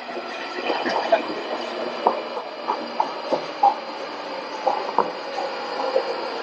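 London Underground Northern line train (1995 stock) running into the platform: a steady electric whine with several tones and irregular clicks and knocks.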